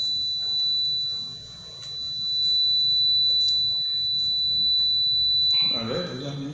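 A steady, high-pitched electronic tone that holds one pitch and is the loudest sound, briefly weaker about a second and a half in, over a faint low hum.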